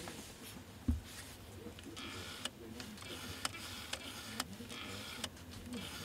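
Gloved hands handling a Nikon AF-S NIKKOR 24-120mm f/4 zoom lens on a DSLR body: cloth rubbing on the ribbed lens barrel as it is turned, with a dull thump about a second in and several light clicks.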